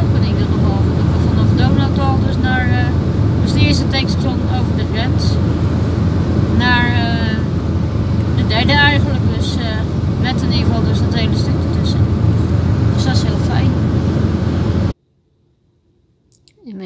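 Steady road and engine noise inside a car's cabin at motorway speed. It stops abruptly about a second before the end.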